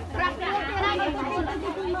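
People chattering at close range, several voices talking over one another.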